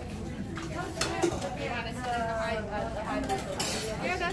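Buffet clatter: metal serving tongs and utensils clinking against stainless-steel food pans and plates, a few sharp clinks over background chatter.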